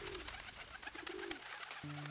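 A flock of feral pigeons cooing, with two short low coos, over a rapid fluttering clatter of wings as birds take off. Music comes in near the end.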